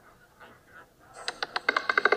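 Roulette ball clattering in a spinning wheel: a fast run of small hard clicks starts about a second in and grows louder and denser as the ball drops from the track and bounces across the pockets, before it settles on a number.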